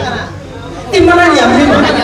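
A voice speaking over a hall's sound system with crowd chatter, with a brief lull and then the voice coming back in about a second in, no music playing.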